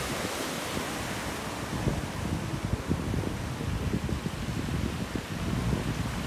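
Wind buffeting the microphone outdoors, an uneven low rumble with no distinct events.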